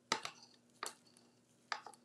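Wooden craft stick knocking against the side of a plastic cup of clear resin while stirring it: three short clicks, a little under a second apart.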